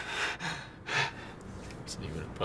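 Breathy gasps, as someone catches their breath after laughing: two strong breaths about a second apart, then a short one near the end.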